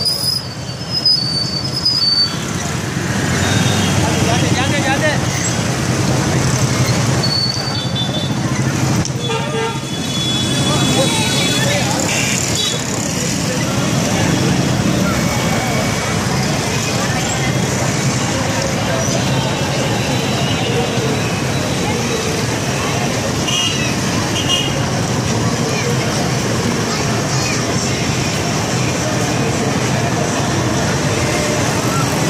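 Busy street traffic of motorcycles and cars running, with horns tooting now and then over a dense, steady din of road noise and people's voices.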